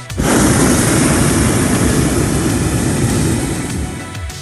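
Hot-air balloon's propane burner firing in one loud, steady blast of about three and a half seconds, starting suddenly and cutting off just before the end.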